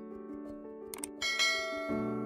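Calm background music with sustained chords. A short click comes at the start and another about a second in, followed by a bright bell-like chime that rings and fades: the sound effects of an animated subscribe button and notification bell.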